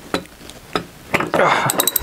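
A three-quarter-inch socket wrench turning a fastener on a propeller hub: sharp metallic clicks and clinks, with a quick run of clicks in the last second as the fastener gives.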